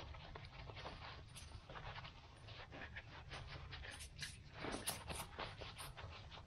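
Faint rustling and scuffing of nylon pouch and webbing as an EPIRB is pushed into a snug-fitting waist-belt pouch.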